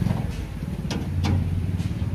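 Steady low hum of a running machine, with a few sharp clicks over it.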